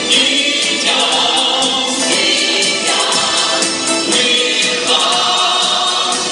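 Mixed choir of adults and children singing a Ukrainian song on stage, with a rhythmic musical accompaniment.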